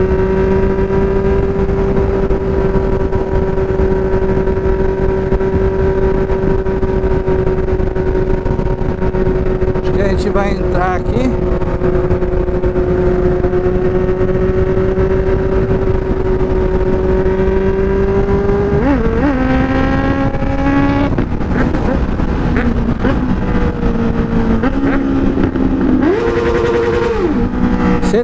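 Honda Hornet 600 inline-four motorcycle engine at steady high revs at highway speed, with wind noise on the microphone. About two-thirds of the way in the pitch drops, then rises and falls with the throttle, and climbs in a quick rev near the end.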